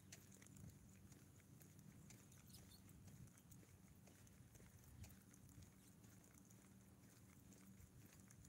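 Near silence: faint, scattered taps of footsteps on a concrete sidewalk over a faint low hum.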